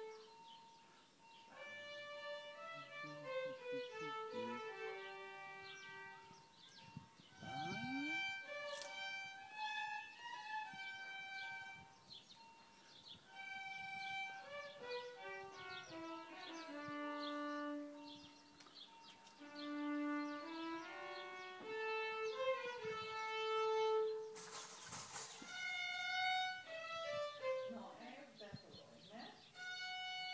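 A violin played slowly, one held note after another in a stepwise melody, as in a violin lesson. A short rush of noise cuts in near the end.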